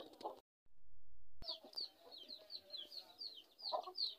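Newly hatching duckling peeping: a quick run of short, high, falling cheeps, about four or five a second. Near the start the sound cuts out for about a second.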